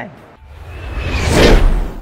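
Whoosh transition sound effect that swells over about a second and falls away near the end, marking a cut between shots.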